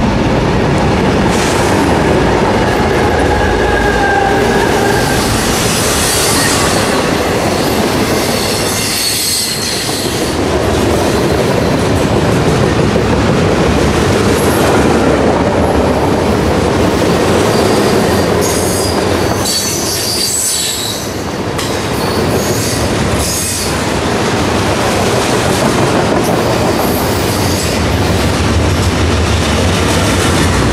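A diesel-hauled freight train passing at close range: the locomotive goes by first, then a long string of container-laden cars rolls past with a continuous rumble and clatter, and high-pitched wheel squeal comes and goes at several points.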